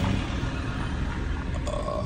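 Low rumble of a car heard from inside its cabin as it drives slowly.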